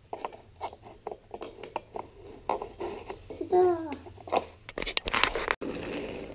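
Wooden toy train track pieces clicking and knocking together as they are handled and fitted, with a louder burst of knocking and scraping near the end. A child's voice babbles briefly partway through.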